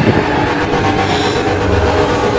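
Loud, steady rumbling noise with a few held tones over it: a horror trailer's sound-design drone.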